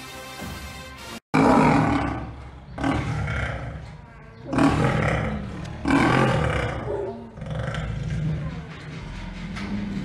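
A tiger roaring again and again, about five loud roars of a second or so each, coming every second and a half or so, with the last one longer and lower.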